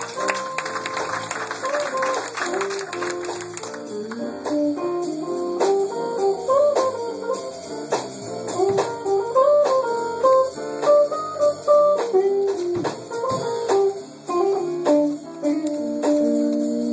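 Live jazz band of saxophones, trumpets, electric guitar and drums playing a tune. A single melody line winds up and down over a steady drum beat, with cymbals loud in the first few seconds.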